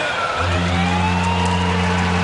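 Arena goal horn sounding a long, steady low blast after a brief break about half a second in, over a cheering, applauding crowd.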